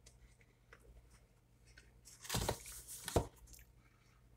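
Cardboard frozen-pizza box being handled and picked up: a rough scraping rustle a little past two seconds in, ending in a sharp knock.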